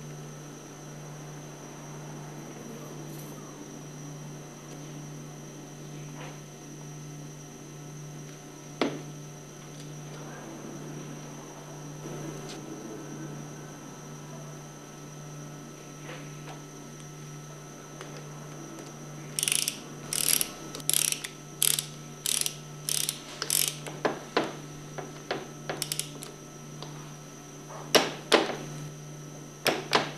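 Ratcheting torque wrench clicking as it runs down a plunger nut on a plunger pump, about two clicks a second for several seconds, then a few scattered clicks and knocks. The nuts are being tightened to 115–120 inch-pounds.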